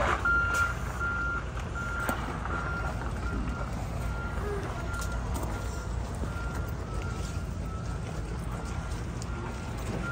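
A vehicle's reversing alarm beeping: one short high beep about every two-thirds of a second, over a steady low vehicle rumble.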